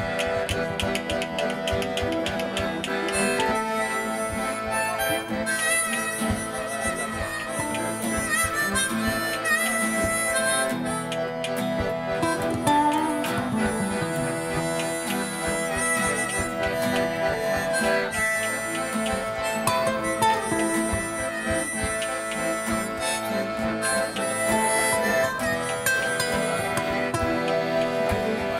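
Live acoustic folk instrumental: a harmonica comes in a few seconds in and plays the lead melody, with bending notes, over an acoustic guitar.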